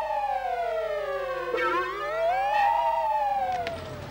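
Electronic, theremin-like gliding tone that swoops slowly down, rises again, then falls away and fades out about three and a half seconds in.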